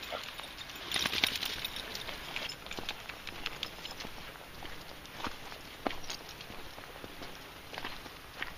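Footsteps on a gravelly path strewn with fallen leaves: irregular crunches and scuffs, with a denser rustling patch about a second in.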